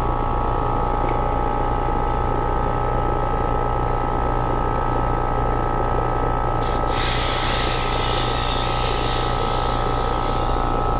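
Refrigerant hissing loudly out of an air-conditioner service-port fitting. The hiss starts suddenly about seven seconds in and does not stop, and the leaking fitting needs a new o-ring. Under it the condensing unit runs with a steady hum.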